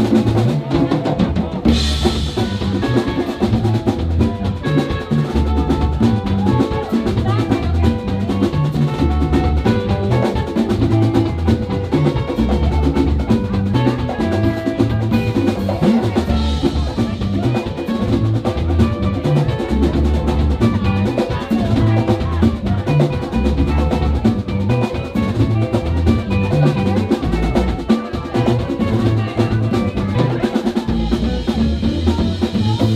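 Live champeta band playing: electric guitars picking quick, bright lines over drum kit and congas, with a steady dance beat and a heavy low end.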